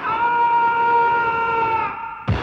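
A single long held note in the film song's music, from a horn-like wind instrument or synthesizer, steady in pitch, sliding down slightly just before it cuts off near the end.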